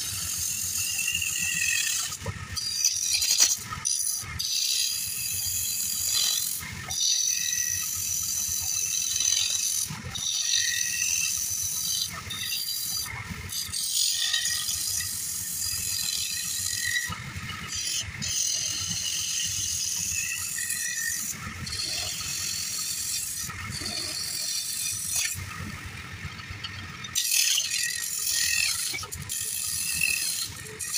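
Turning gouge cutting a wooden bowl blank spinning on a lathe: a rough, rattling scrape of the tool biting into the wood and throwing off shavings. The cut breaks off briefly every few seconds, with a longer pause near the end.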